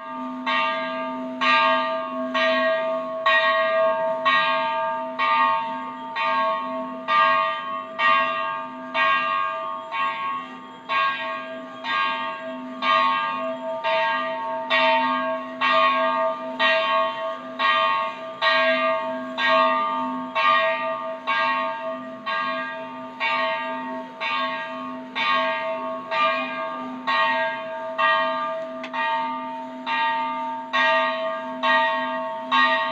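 Metallic bell-like ringing, struck in a steady rhythm nearly twice a second, over tones that ring on without a break.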